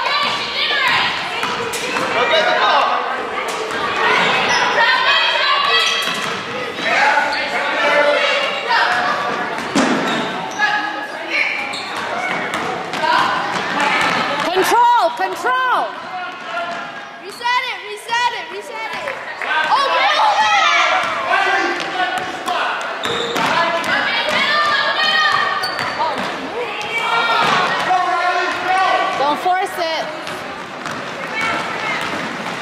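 Echoing gym sound of a youth basketball game: a basketball dribbling on the hardwood court under shouting voices from players and spectators.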